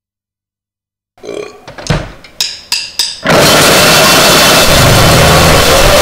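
Silence for about a second between tracks, then a short rough vocal sound and several sharp hits. From about three seconds in, a loud, dense wall of distorted noisecore noise starts abruptly and holds steady.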